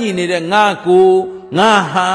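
A Buddhist monk's voice intoning in a sing-song chant, with notes held steady and others arching up and down in pitch.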